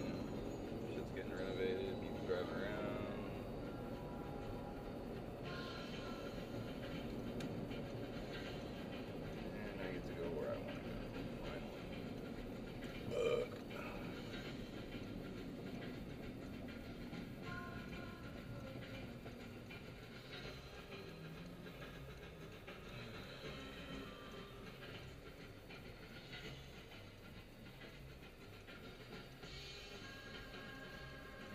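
Low road and engine rumble inside a car crawling in traffic, with music and a voice heard faintly over it. There is a brief louder sound about halfway through.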